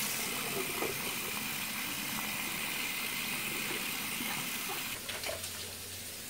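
Bathroom sink tap running steadily, the water stream splashing onto a cloth rag held under it; the flow stops about five seconds in.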